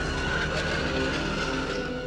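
Ominous film-trailer score under the title card: held tones over a low, rumbling noise that thins out toward the end.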